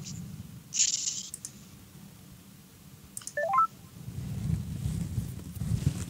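A quick run of short electronic beeps stepping up in pitch, a little over three seconds in, from a call being placed to bring in a remote guest. A brief hiss comes about a second in.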